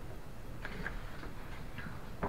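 Faint paper rustles and a few soft ticks as the pages of a picture book are handled and turned.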